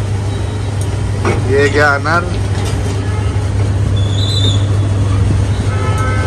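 A steady low engine hum over street traffic noise, with a few spoken words about a second in and a brief hiss near the end.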